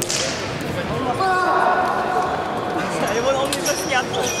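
A sharp hand slap of a high-five right at the start, then scattered knocks and footfalls echoing around a large wooden-floored sports hall.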